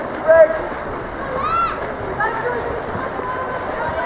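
Spectators' voices calling out during a water polo game, with one high, drawn-out shout about a second and a half in, over a steady hiss of splashing water.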